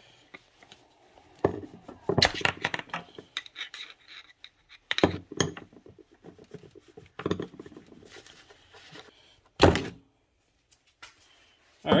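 Flathead screwdriver knocking the steel sleeves and rubber bushing out of a stock car shifter on a workbench: irregular metal knocks and clinks, the loudest a little before the end.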